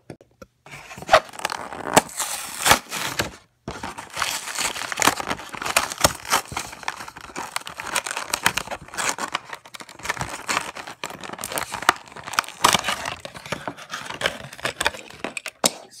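Clear plastic blister pack and cardboard backing card of a diecast toy car being torn open by hand: crackling, crinkling plastic and tearing card, with a brief pause about three and a half seconds in.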